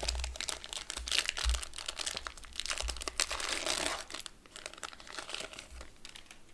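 Plastic wrapper of a trading-card pack crinkling as it is torn open and pulled off the cards, heaviest in the first few seconds and easing off after, with a few dull handling bumps.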